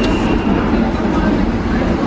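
Steady low rumble and noise of a New York subway train running in the station.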